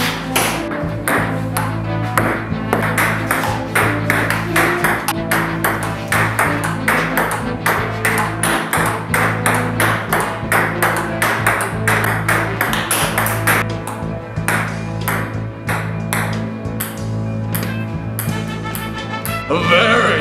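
Table tennis rally: the celluloid ball clicking off paddles and the table several times a second, over background music with a steady bass line.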